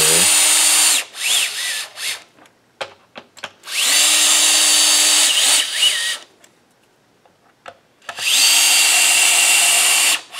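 Cordless drill driver running in several short bursts as it drives wood screws through a chrome neck plate into a bolt-on guitar neck. Each run starts with a rising whine as the motor spins up, and the runs are separated by quiet gaps with a few small clicks. The screws are being driven in but not yet tightened fully.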